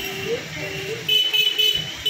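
Vehicle horns honking in long steady tones, on and off, over traffic noise.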